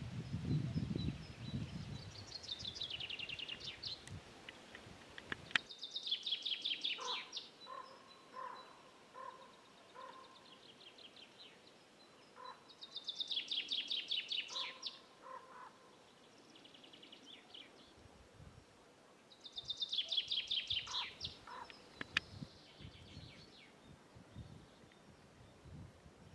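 Songbird singing: a rapid, high, descending trill phrase of about two seconds, repeated several times a few seconds apart, with some lower, separate notes in between.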